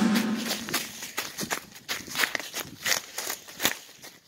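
Footsteps crunching through dry leaf litter, about two or three steps a second, with twigs and leaves rustling underfoot.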